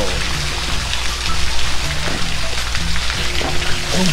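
Steady hiss of running or splashing water throughout, with a low steady hum beneath it.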